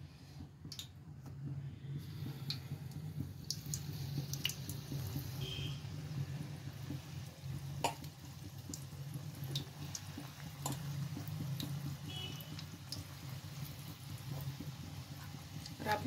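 Besan pakoras frying in hot oil in a kadai: a soft sizzle with scattered crackles and pops, over a steady low hum.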